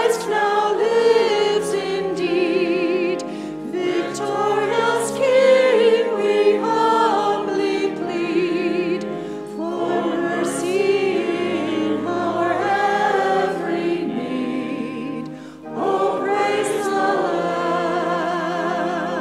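A church choir singing, with vibrato voices over held low accompanying notes that change every few seconds.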